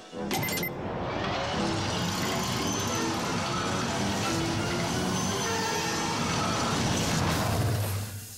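Background cartoon music over the steady rolling rumble of a small test cart speeding along a looping rail track.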